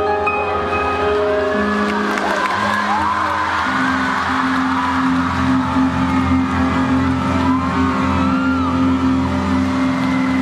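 Live concert music over an arena sound system, recorded from the audience: sustained low synthesizer or bass chords that shift every second or two. High voices from the crowd glide up and down over it.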